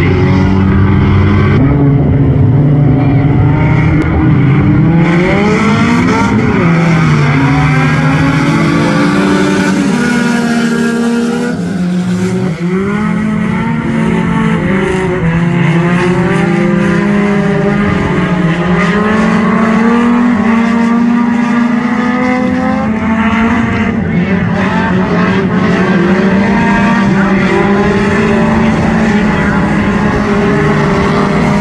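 A pack of front-wheel-drive four-cylinder race cars running together. Several engines sound at once, their pitches rising and falling as the drivers lift and get back on the throttle.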